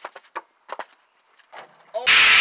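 A few light taps and scuffs of sneakers on concrete as a basketball player runs in for a layup, mostly in the first second.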